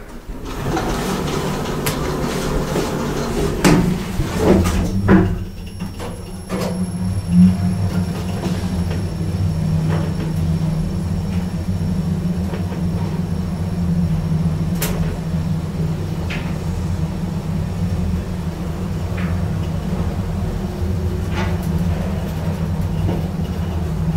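KONE passenger elevator: the car doors slide shut with a couple of knocks about four to five seconds in, then the car travels down with a steady low hum and a faint, thin high whine.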